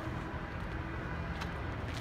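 Steady low rumble of outdoor background noise, with one faint click about halfway through.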